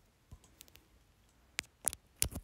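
A few light clicks and taps from fingers handling and tapping a smartphone, faint about half a second in and louder twice near the end.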